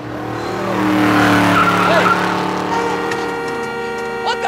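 A car coming up fast alongside, its engine running and tyres squealing. The sound builds over the first second, is loudest about one to two seconds in, and eases off after about three seconds.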